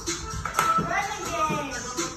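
Backing music playing with a child's voice singing along into a microphone.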